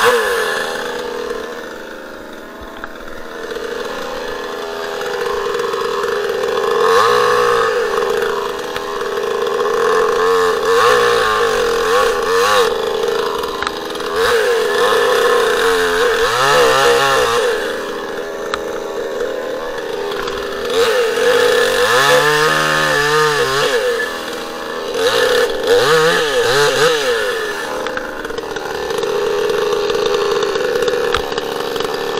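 Demon CS 58T 55 cc two-stroke chainsaw, a new saw still on its break-in, running at high revs and cutting into a fresh alder trunk with a full-chisel chain. Its engine pitch drops and recovers several times as the chain works through the wood.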